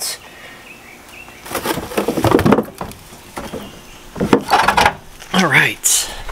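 Group 48 (H6) lead-acid car battery being lifted out of its plastic battery box, with scraping and knocking in a few short spells and a sharp knock about four seconds in.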